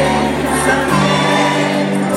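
Loud live band music with singing at an arena concert; the bass line changes note about a second in.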